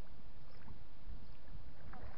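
Wind buffeting the microphone, a steady low rumble, with a few faint short high sounds in the second half.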